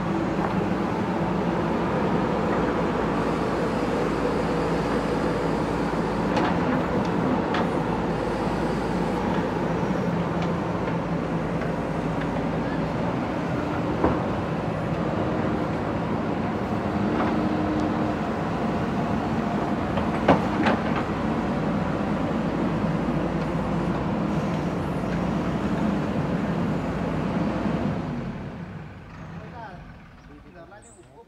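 JCB backhoe loader's diesel engine running steadily as the backhoe digs, with two sharp knocks, about halfway and two-thirds of the way through. The sound fades away over the last two seconds.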